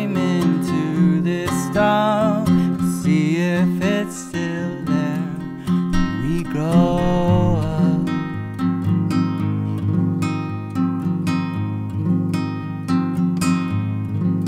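Live acoustic guitar-and-vocal song. A male voice sings drawn-out lines over strummed acoustic guitar until about eight seconds in, then the guitar carries on alone in a steady strumming rhythm.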